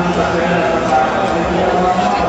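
Speech: voices talking over a steady background hubbub.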